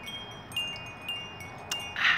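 Wind chimes ringing: about four light metallic strikes, each a high clear tone that rings on and fades before the next.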